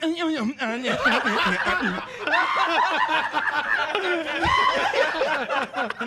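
A group of people laughing loudly together, several voices overlapping, with exclamations mixed into the laughter.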